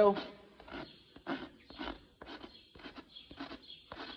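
Farrier's hoof rasp scraped across a horse's hoof wall in short, even strokes, about two a second, rolling the toe to round off its front edge.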